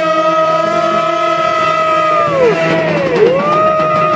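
A man's voice sung into a microphone and amplified, holding two long notes in a row, each sliding up into the note and down out of it, over a steady low drone.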